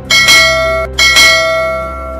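A bright bell chime sound effect rings twice about a second apart, each time struck twice in quick succession and ringing on as it fades. It is a notification-bell sound effect, over quieter background music.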